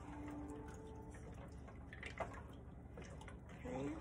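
Faint sloshing of beef broth and pasta as it is stirred with a wooden spoon in a skillet, with a single light click a little after two seconds in.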